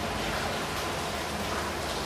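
Steady, even hiss of background noise.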